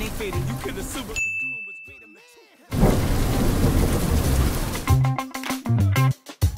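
Commercial-break audio. A hip-hop music bed fades out in the first two seconds, with a thin, steady high beep for about a second and a half. About halfway through a loud rushing noise cuts in, and sharp music hits start near the end.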